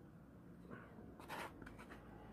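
Handling noise over quiet room tone: a brief scraping rustle about a second and a half in, followed by a few small clicks, as the empty paper noodle cup is moved about in the hands.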